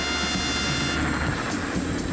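Jet aircraft engine running with a low rumble and a steady high whine; the whine fades about halfway through.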